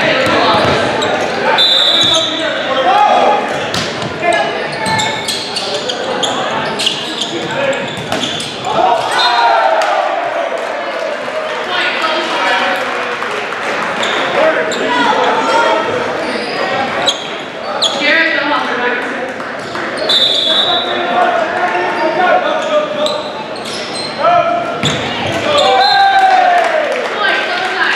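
A volleyball being struck and bouncing during play, sharp slaps ringing in a large gymnasium over steady crowd and player voices. A referee's whistle sounds twice, short and shrill: once a couple of seconds in and again about three quarters of the way through.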